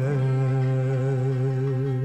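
Turkish classical song: a male voice holds one long, low, steady note, the closing note of the song, with light accompaniment under it.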